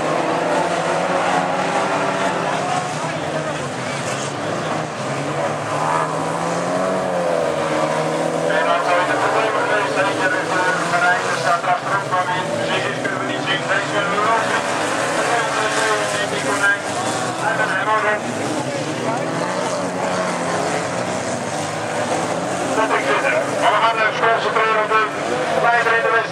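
Race car engines revving up and down as several cars accelerate and lift off around the bends of a dirt autocross track.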